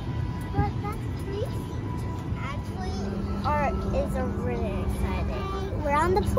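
Steady low rumble of an airliner cabin's air system while parked at the gate, with a steady hum joining about three seconds in, and snatches of high voices over it.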